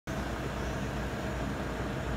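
Steady outdoor noise with a low, uneven rumble and no distinct events.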